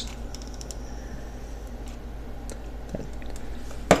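Faint handling noises as a pleather strip is pressed onto a hot-glued bow handle: a few light clicks in the first second and another near the end, over a low steady hum.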